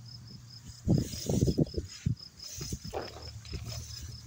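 Steady high chirping at about four chirps a second, typical of a cricket, over irregular low thumps and knocks, the loudest about a second in and again near three seconds.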